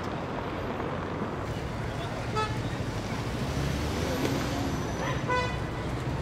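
City street traffic noise with a steady low rumble. A car horn gives two short toots, about two and a half seconds in and again near the end.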